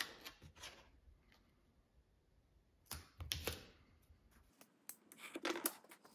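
Faint handling of wide double-sided tape: the paper backing crackling as it is peeled, with light clicks and taps as the pieces are handled. A short rustle comes about three seconds in, and a quick run of ticks near the end.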